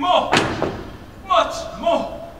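A single loud thud on the stage about a third of a second in, with a short ringing tail in the hall, among brief bursts of a man's voice.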